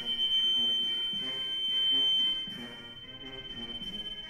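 Military brass band playing, with a loud, steady high-pitched whine held over the music; the whine is strongest for the first couple of seconds, then eases off.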